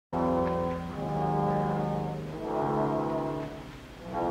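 Opera orchestra playing three sustained chords, each held for one to one and a half seconds, the last fading away near the end.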